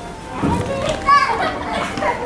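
High-pitched children's voices calling and squealing, starting about half a second in, with one loud rising squeal just past the middle.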